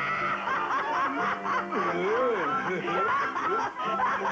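A cartoon character's dubbed voice laughing in repeated bursts, unable to hold it back, with background music underneath.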